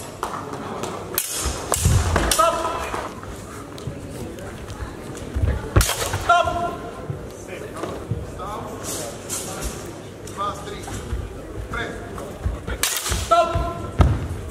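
Steel training longswords striking in a sparring bout, several sharp hits, three of them each followed about half a second later by a short shout. Steady voices and echo of a big sports hall run underneath.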